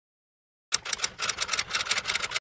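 Intro sound effect: a dense run of rapid, crackling clicks that starts under a second in and cuts off suddenly, accompanying a glitching title animation.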